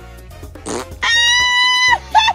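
Comedic fart sound effect, laid over light background music: a short whoosh, then a loud, steady, high buzzing tone about a second long that cuts off suddenly.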